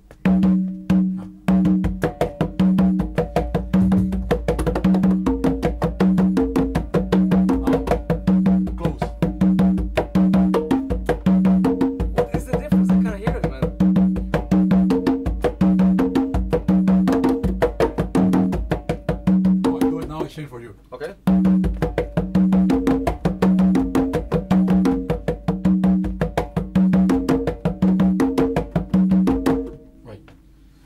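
Congas played by two players in an interlocking rumba Colombia pattern: rapid slaps and muted touches with open tones ringing at two pitches, repeating steadily. The playing breaks off briefly about two-thirds of the way through, then picks up again.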